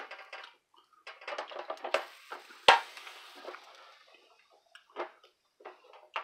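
Hinged lid of an electric tortilla press being brought down on a ball of corn dough: some clattering, then one sharp knock about two and a half seconds in as the lid presses down, followed by a short hiss from the dough flattening on the hot plate, and a couple of light knocks near the end as the lid is lifted.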